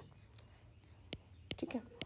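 A few faint, sharp taps of a stylus on a tablet's glass screen as a word is handwritten, over a faint steady low hum.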